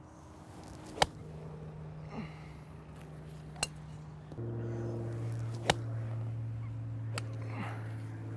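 Golf wedge striking a ball on a grass range: a sharp click about a second in and another near six seconds in, with a couple of fainter clicks between. A steady low hum runs underneath.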